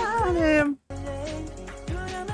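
A woman's high, whiny squeal sliding down in pitch, louder than the K-pop song playing under it, then cut off suddenly just under a second in. After a brief gap the song carries on.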